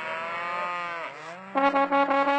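A cow mooing: one call that rises and then falls in pitch. About a second and a half in, a trombone comes in with short repeated notes.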